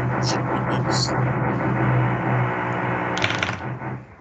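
A man's voice talking over a video-call connection, continuous and drawn out, with a short hissy sound about three seconds in.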